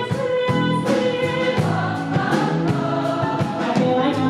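Live band music: a woman singing into a microphone over electric bass, grand piano and drums, with steady beats from the drums and cymbals.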